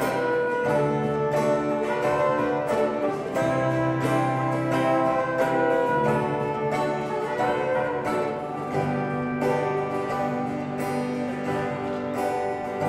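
Acoustic guitar playing a hymn accompaniment, with long held notes underneath.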